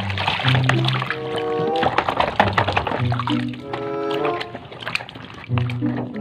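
Background music playing over water sloshing and splashing as a plastic toy is scrubbed by hand in a basin of soapy water.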